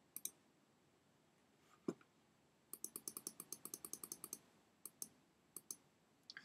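Faint clicks of a computer keyboard and mouse: two clicks at the start, a duller knock about two seconds in, then a quick run of key clicks lasting about a second and a half, and a few scattered clicks near the end.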